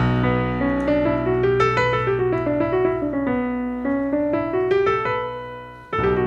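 Digital piano playing a B natural minor scale (the notes of D major, run from B to B) over a sustained low chord. The right hand steps up and back down the scale, and the sound fades out near the end.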